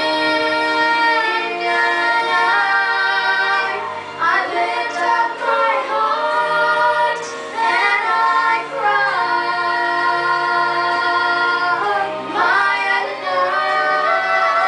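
A young woman and a boy singing a duet into handheld microphones, in long held notes that slide between pitches.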